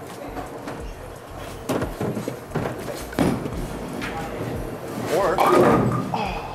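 A light six-pound bowling ball rolling down a lane and knocking into pins, with sharp clatters about two and three seconds in. A voice calls out near the end.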